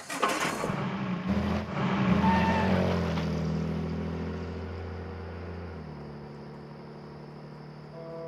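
A car engine started with the ignition key: a noisy burst of cranking, then the engine catches about a second in and runs with a steady low hum that slowly fades.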